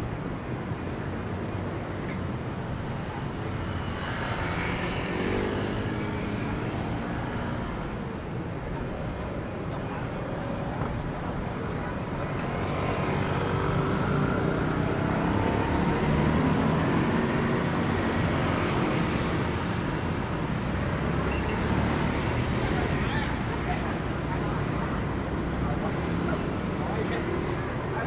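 Busy city street: a steady din of road traffic, cars and motorbikes passing, with voices of passers-by talking nearby, louder about halfway through.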